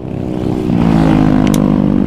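Motorcycle engine running at road speed while riding, its note climbing slightly about a second in as it accelerates.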